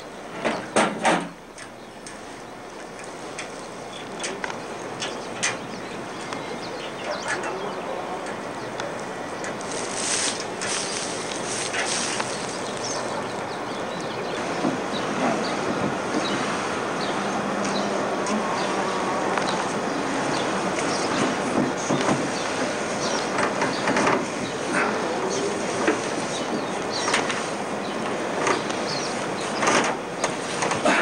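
Scattered clicks and knocks from hands working at a pickup truck's camper cap, over a steady hiss that builds over the first several seconds.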